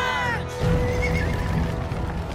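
Cartoon characters screaming together: a high, shrill cry falling in pitch that breaks off about half a second in. Music with a held note and a steady low beat plays underneath and carries on.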